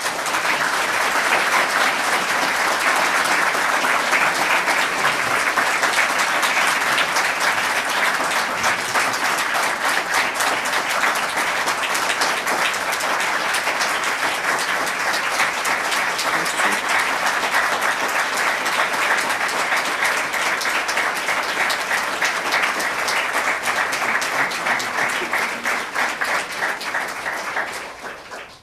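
Applause from a roomful of people clapping together, steady and dense, thinning out just before the end.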